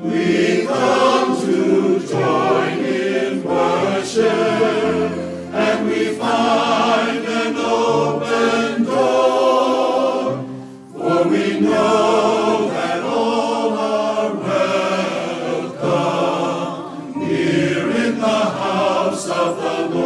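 Mixed-voice church choir singing an anthem with piano accompaniment. The singing breaks briefly between phrases about eleven seconds in.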